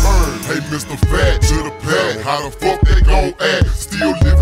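Chopped-and-screwed hip hop: slowed-down, low-pitched rapping over a beat with heavy pulsing bass.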